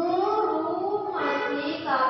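A high voice chanting in a drawn-out sing-song, holding long notes that slide up and down, with two short breaks between phrases.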